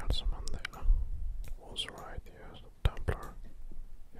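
A person whispering, with hissy s-sounds and sharp mouth clicks scattered through, over a low rumble.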